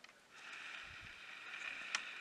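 A camera's lens zoom motor whirring steadily as it zooms in, starting shortly after the beginning, with a sharp click near the end.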